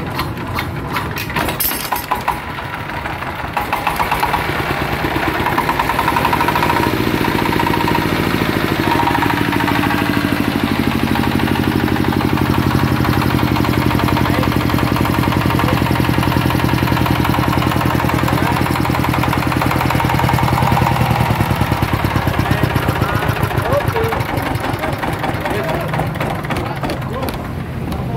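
Dongfeng S1115 single-cylinder diesel engine being hand-crank started: rapid irregular clattering at first, then it catches about three and a half seconds in and runs on steadily and louder.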